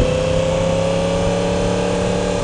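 Onboard sound of a 2016 Yamaha R1's crossplane inline-four engine, fitted with an aftermarket exhaust, pulling steadily in second gear. Its note rises slowly as the bike gathers speed.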